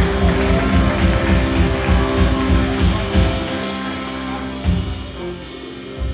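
Live band of electric guitar and drum kit playing an instrumental passage, with a pulsing low beat for about three seconds that then thins out and dies down, with a few last hits near the end.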